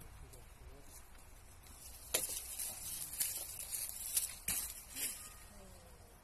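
Olive branches and leaves rustling and cracking as they are pulled and cut during pruning, several sharp cracks starting about two seconds in.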